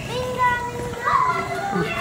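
Young children's voices, one holding a long, steady call for about a second and a half while other short cries overlap it.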